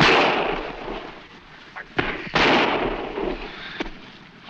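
Two rifle shots on an old film soundtrack: one at the start and a second a little over two seconds in. Each is a sharp report that trails off over about a second.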